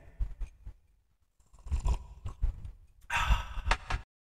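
A man drinking coffee from a mug, with soft swallowing sounds, then a loud breathy sigh about three seconds in as he lowers the mug.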